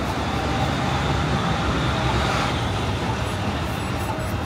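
Steady city street traffic noise with a low, even engine rumble underneath.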